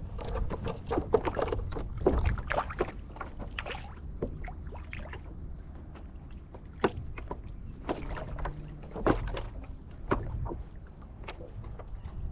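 Water lapping against the hull of a paddleboard, with a low rumble and irregular sharp clicks and knocks from rod and tackle being handled on the deck.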